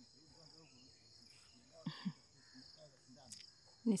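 Steady high-pitched insect chorus, an even shrill trilling that holds without a break, with a voice starting right at the end.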